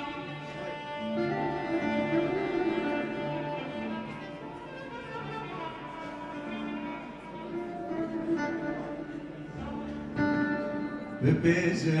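Live instrumental music from a small ensemble on stage: a sustained, melodic line of held notes over accompaniment. About eleven seconds in, the music swells louder and fuller.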